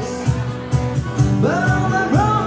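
Live acoustic band: an acoustic guitar strummed over a cajon keeping a steady beat, about three to four hits a second. A voice comes in singing about one and a half seconds in.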